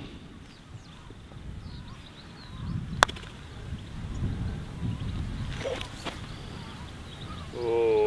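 A putter striking a golf ball once: a single sharp click about three seconds in, over a low rumble of background noise. A man's voice starts up near the end.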